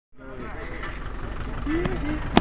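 People's voices over a steady low rumble that fades in at the start and grows louder; a short vocal "uh, uh" comes near the end.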